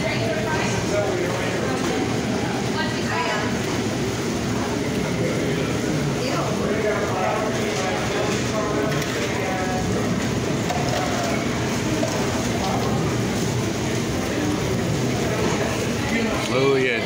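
Steady hubbub of a busy restaurant: many overlapping, indistinct voices with no clear single event.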